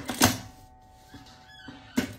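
Two sharp clacks from handling the sewing machine and the work, one about a quarter second in and one at the end, with a faint steady tone between them.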